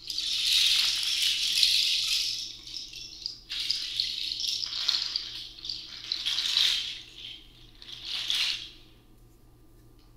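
A hand rattle (shaker) is shaken in about four bursts of hissing rattle. The first burst lasts about two seconds and the later ones are shorter.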